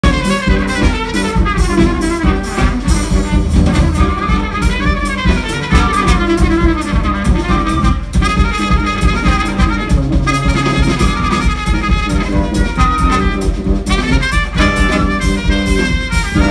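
Live wind band playing an upbeat jazz-style tune: flute, a reed instrument and trombone in melody lines over a steady, driving beat.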